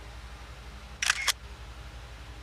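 Two quick sharp clicks, about a quarter of a second apart, about a second in: a small matte plastic hair clip being snapped or opened in the hand.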